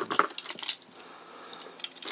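Hard plastic parts of a chrome-plated toy robot clicking and clacking against each other as they are handled: a quick cluster of clicks at the start and a few more about half a second in, then faint handling.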